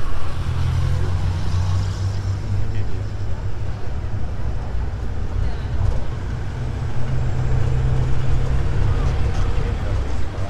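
Engine drone and road noise of a moving vehicle, heard from on board, with traffic around it. The low engine hum swells twice, near the start and again near the end.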